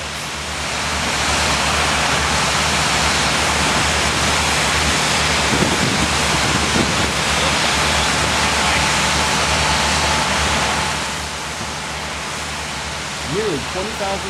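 High-volume fire monitor water streams rushing and spraying, a steady wash of falling water over a low, steady engine-like drone from the pumping equipment. The water noise swells about a second in and drops back about eleven seconds in.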